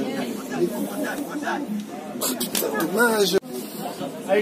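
Men's voices calling out and chattering on the sideline, somewhat quieter than the shouting just before and after.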